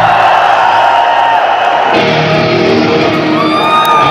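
Loud live rock music led by electric guitar, with held notes. The sound grows fuller and heavier about halfway through.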